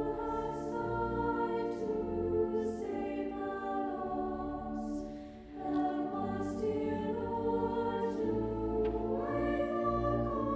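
Small choir of women's voices singing a hymn in long held notes, with a short break for breath about halfway through.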